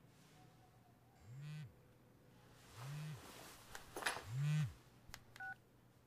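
Mobile phone vibrating with an incoming call: three short buzzes about a second and a half apart, each rising and falling in pitch, with a couple of sharp clicks near the end.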